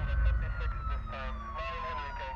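A police siren's long wail, falling slowly in pitch, over a low rumble of city traffic.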